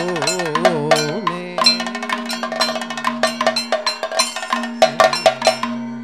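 Kathakali music: a singer's voice with quick wavering ornaments in the first second or so, then held notes, over a steady drone. Rapid metallic strikes of hand cymbals and gong keep time, with drum strokes among them.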